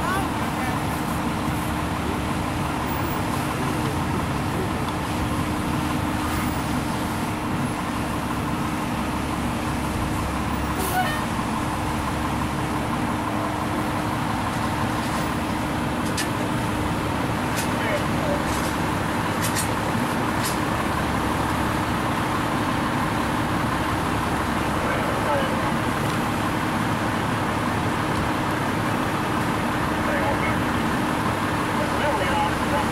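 Fire engine running steadily, a constant engine hum under an even wash of outdoor noise, with a few faint ticks in the middle.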